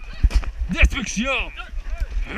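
Several people yelling short cries that rise and fall in pitch, one after another, with low thumps from fighters running and clashing in a mock melee.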